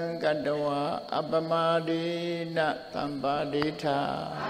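A man chanting a Buddhist recitation on a nearly level pitch, in long held phrases with short breaks between them.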